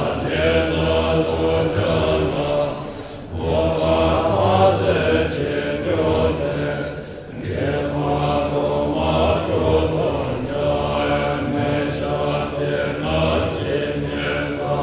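Tibetan Buddhist monks chanting a liturgy together in low voices, in long phrases with short breath pauses about 3 and 7 seconds in.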